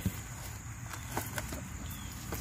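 Faint rustling and a few light taps as a piece of cardboard is handled and slid under a young melon among the vines, over a steady high-pitched chirring of crickets.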